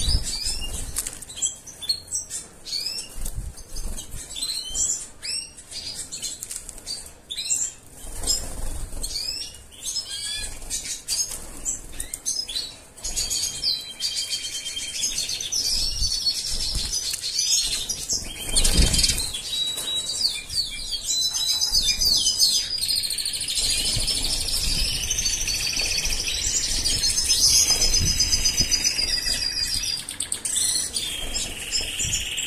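Caged European goldfinches calling with short chirps, then from about halfway a continuous twittering song with trills. A few soft thumps of wings fluttering in the cage come through now and then.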